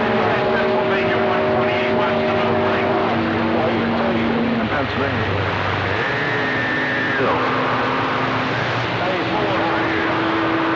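Radio receiver on a crowded CB channel: band-noise hiss with several steady heterodyne whistles that come and go, and faint garbled voices underneath. The whistles are the sign of distant stations transmitting on top of one another.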